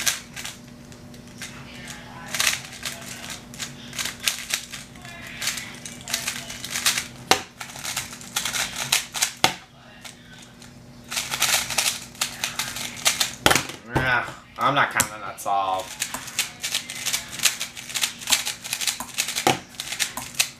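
Plastic speedcube being turned quickly by hand: rapid runs of light clicks and clacks from the layers, in bursts, with a quieter pause about halfway through.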